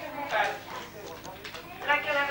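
A voice in the room with a run of light clicks and clinks in between, as stacked tableware is handled.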